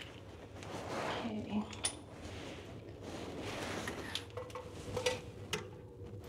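Rustling of plastic and braided steel water-supply hoses being handled, with a few light metallic clicks from the hose fittings, as a bidet's hose is fitted to a toilet's water connection.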